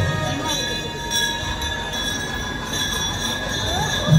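Temple bells ringing continuously during the aarti, a steady metallic ringing held over crowd noise.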